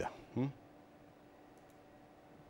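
A man's voice trailing off in the first half second, then near silence: room tone with a faint steady hum.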